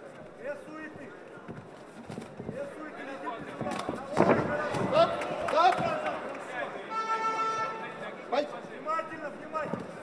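Men's voices shouting in a fight arena, loudest a few seconds in, with a few sharp knocks and a held pitched call near the end.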